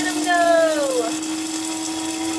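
Electric blade coffee grinder running steadily, its motor whirring as the blade chops a small batch of beans, kept short for a coarse French-press grind.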